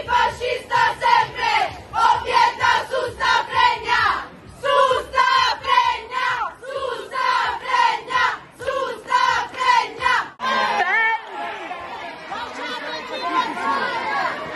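A crowd of protesters chanting a slogan together in a steady rhythm of shouted syllables. About ten seconds in, the chant breaks off suddenly and gives way to a dense, continuous jumble of shouting voices from a packed crowd.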